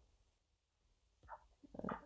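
Near silence: a pause in a video call, broken by a few faint, brief sounds in the last second.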